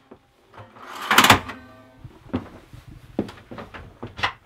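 A large pull-out bunk-bed drawer sliding out on its runners, loudest about a second in, then a few light clicks and knocks.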